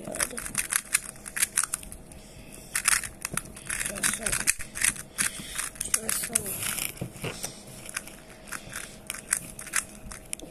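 A hollow-tiled plastic 3x3 puzzle cube being twisted by hand: quick, irregular clicks and clacks as its layers turn.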